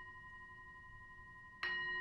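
A hand-held metal singing bowl rings with a steady chord of several tones that slowly fades. Near the end it is struck again with a mallet, and the ringing swells back up.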